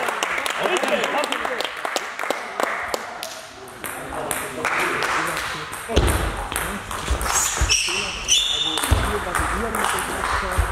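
Table tennis balls clicking against tables and bats in a sports hall, scattered sharp clicks over a bed of indistinct voices. A few short high squeaks come about seven to eight seconds in.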